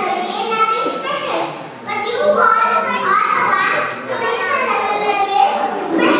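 Only speech: a young girl speaking into a handheld microphone.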